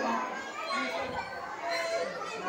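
Young children chattering, several voices overlapping at a moderate level.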